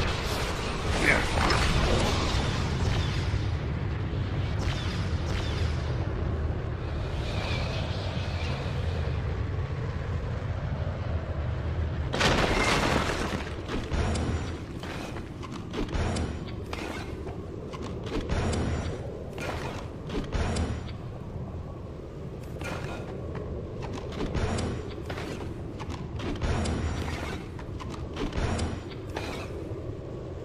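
Film sound effects: mechanical knocks and clanks over a steady low rumble. A loud rushing burst comes about twelve seconds in, then short knocks recur irregularly about once a second.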